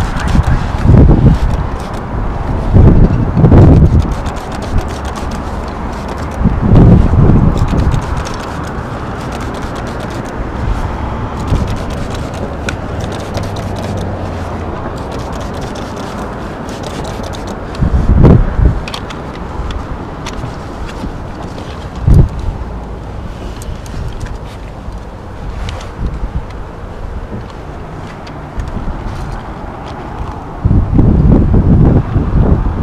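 Wind rushing over the microphone of a head-mounted camera on a high-rise facade, with several loud low buffeting gusts, over faint scraping of window-cleaning work on the glass.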